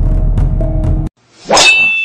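Tense background music that cuts off suddenly about a second in, followed by a sharp metallic clang with a high ringing tone that carries on.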